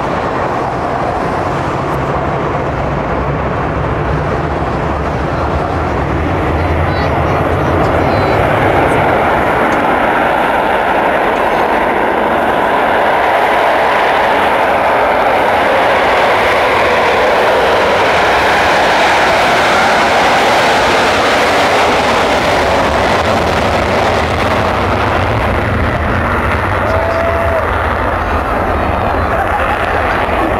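Concorde's Olympus 593 turbojets at full takeoff power with the afterburners (reheat) lit during the takeoff roll: loud, continuous jet noise that swells for several seconds around the middle as the aircraft passes, then eases slightly.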